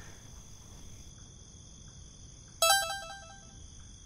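A short electronic chime about two and a half seconds in: a quick run of a few stepped notes, like a phone notification tone, lasting under a second over a faint steady background.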